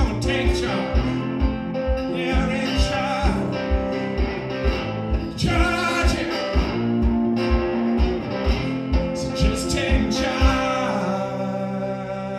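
Live blues on a lap-played slide guitar over a steady low thump about twice a second. Near the end the thumping stops and the final chord is left ringing as the song closes.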